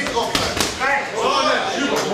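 Boxing-glove punches landing: two sharp smacks about a quarter second apart.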